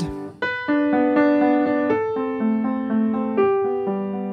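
Piano played with the right hand alone: a chord broken up into single notes picked out one after another, about three a second, each left ringing.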